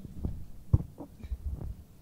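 Handling noise from a handheld microphone being passed from one hand to another: a scatter of low thumps and knocks, with one sharper knock about three quarters of a second in.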